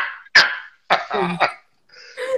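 Loud, short bursts of laughter, several in quick succession.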